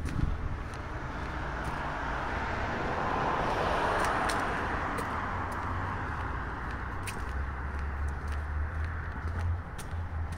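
Road noise of a moving car heard from inside: a steady low rumble with tyre hiss that swells louder for a couple of seconds around the middle, then settles.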